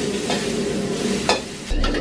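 Stir-fry sizzling in a wok while a metal spatula stirs and scrapes through it, with a few sharp knocks of the spatula against the wok.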